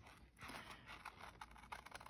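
Faint snips and light scraping of scissors cutting around a curve in scrapbook paper.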